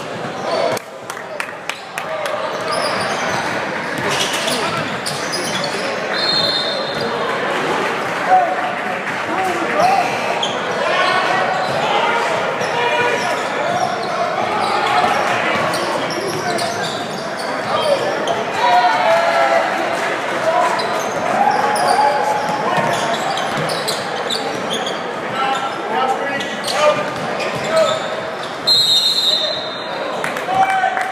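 Live sound of a basketball game in a gym hall: a basketball bouncing on the hardwood court, with many short knocks, under echoing voices of players and spectators.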